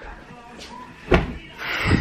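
A child flinging himself down onto a sofa: a dull thud about a second in, then a rustle and a second, heavier thud near the end.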